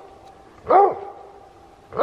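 Coon dog barking treed at a raccoon up a tree: one short bark that rises and falls in pitch, about three-quarters of a second in, with the next bark starting at the very end.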